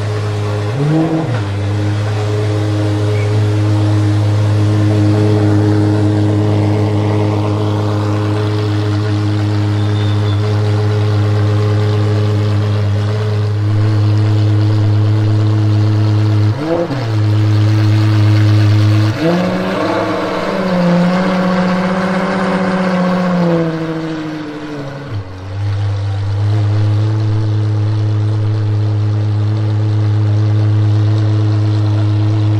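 De Tomaso P72 supercar engine idling steadily. It is blipped briefly about a second in and again past the middle. It is then held at higher revs for about five seconds before dropping back to idle.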